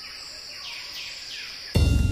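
Rainforest ambience: a steady high-pitched insect drone, with a bird giving three quick descending calls about a second in. Near the end a louder, lower sound cuts in abruptly.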